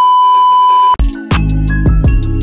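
A steady, loud test-tone beep of the kind played over TV colour bars, held for about a second and cut off sharply; then montage music with drum hits and bass comes in.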